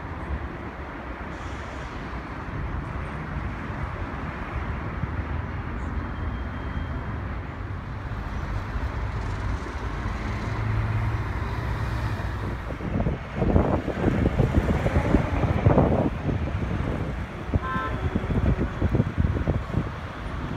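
Open-air city ambience: steady traffic rumble from the surrounding roads, with a louder, rougher stretch a little past the middle and a brief high-pitched tone near the end.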